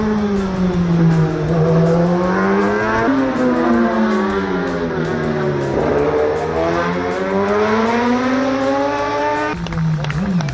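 Racing motorcycle engines through a slow corner: each note drops as the bike slows for the bend, then climbs smoothly as it accelerates out. The sound jumps abruptly about three and six seconds in, where one pass gives way to the next.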